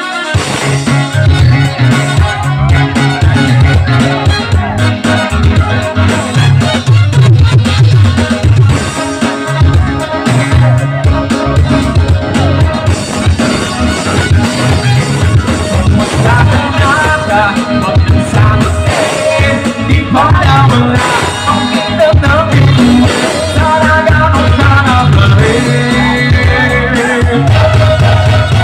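A live party band plays an upbeat number with a steady beat: a drum kit and bass are prominent under keyboards and a saxophone and horn section.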